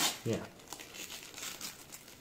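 Gift-wrapping paper crinkling and tearing as it is pulled open by hand, in a quick run of short rustles.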